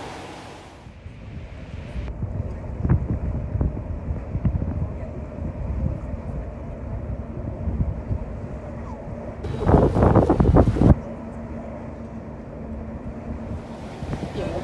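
Wind buffeting the microphone over a low rumble by open harbour water, with a loud blast of wind noise lasting about a second and a half, some ten seconds in.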